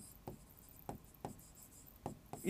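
Marker pen writing on a whiteboard: a few faint, short strokes.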